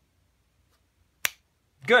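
A single sharp snap about a second in, within otherwise near silence.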